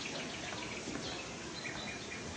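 A small bird chirps repeatedly in short high notes over steady background noise; the chirps come in a quick run during the first second and again briefly near the end.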